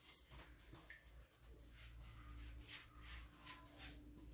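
Near silence, with a few faint, soft dabs and taps of a silicone pastry brush dipping into a pan of melted butter and spreading it on dough.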